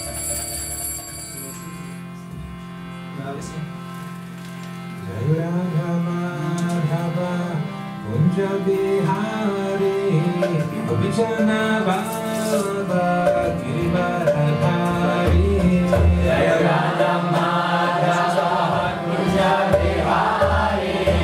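Harmonium holding a steady chord, with a man starting to sing a slow kirtan melody over it about five seconds in. Hand cymbals ring at the very start, and low mridanga drum strokes come in over the last few seconds.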